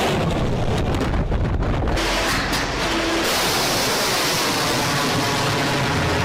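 Missile launch: a sudden blast, then a loud, steady rushing noise from the rocket motor that grows hissier about three seconds in.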